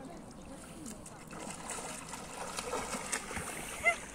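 River water splashing and sloshing as a person crouches and sinks in up to the shoulders. The splashing builds up about a second in and goes on for a couple of seconds.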